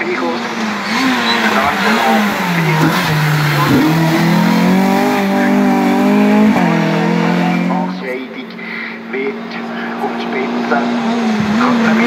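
Race-prepared Renault Clio's four-cylinder engine at full load, its revs dropping as it brakes for a hairpin, then climbing hard with a sharp gear change, before fading as the car pulls away. Near the end a second Clio's engine is heard approaching.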